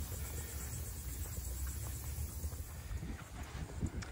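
Footsteps on a sandy dirt trail, with a low steady rumble underneath.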